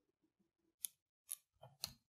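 A thin metal carving tool cutting and scraping into the rind of a squash: near silence, then about four short, sharp scrapes in the second half.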